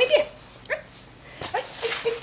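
Spanish water dog puppy, about a month old, giving a few short, high whimpers, with a small click about a second and a half in.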